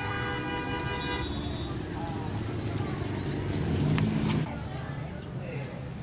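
A vehicle horn sounds once, a steady toot of about a second at the start, over people talking and street noise. A louder low rumble swells about four seconds in and cuts off suddenly.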